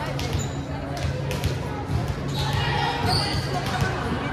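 A volleyball thudding on a hardwood gym floor several times at irregular intervals, over indistinct voices in a large echoing gymnasium.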